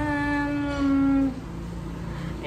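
A woman's voice drawing out one long, level hesitation sound, a held "naaa", for over a second before stopping about a second and a half in.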